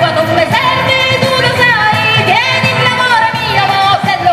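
Live pizzica folk music: a singing voice over a steady drum beat and instruments.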